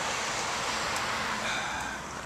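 Steady hiss of road traffic, car tyres on the road going past, easing off a little near the end.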